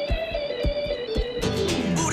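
Live band music in an instrumental passage: guitar and keyboard over drum beats about every half second, with a long falling slide in pitch near the end.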